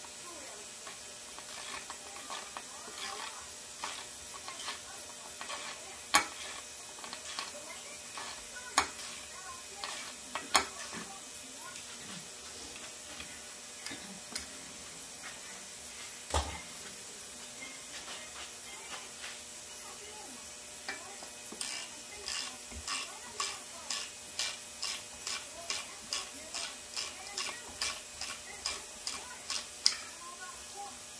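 Hand tools clinking and knocking on metal, with one heavier clunk about halfway through. From about three-quarters in, a ratchet wrench clicks in a steady run of strokes, about two to three a second, backing out one of the lower-unit bolts.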